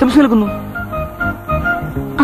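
Film song: a voice sings a melodic phrase that trails off about half a second in, over instrumental backing of short held notes and a low pulsing beat.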